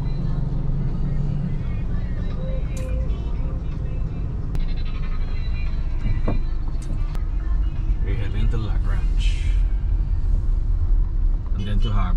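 Steady low rumble of a car's engine and tyres heard from inside the cabin while driving in traffic, with faint music and voices under it.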